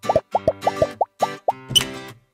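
A quick run of cartoon plop sound effects, about nine short rising pops in the first second and a half, over light background music with plucked strings. A short noisy burst follows near the end.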